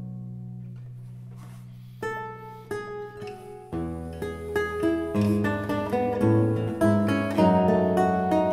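Solo baroque lute playing: a held chord dies away, then plucked notes resume about two seconds in. Deep bass notes join a little later as the passage grows busier and louder.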